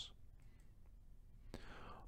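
Near silence: room tone, with a faint intake of breath near the end.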